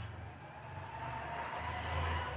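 Low background hum with a faint hiss, growing a little louder near the end.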